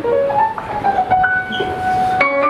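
Keyboard playing alone, slow and unaccompanied, settling on one long held note.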